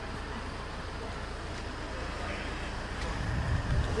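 Night street traffic: a car's engine running close by over a steady low rumble, growing a little louder near the end.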